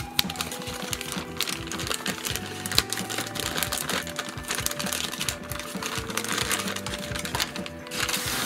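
Thin plastic packaging bag crinkling and crackling as it is torn open, with many small irregular clicks as the large plastic spring clamps inside are handled and pulled out. Soft background music runs underneath.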